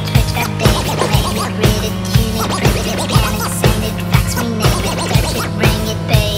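Live band music with a steady beat of about two a second over a heavy bass line, with a DJ's turntable scratching over it.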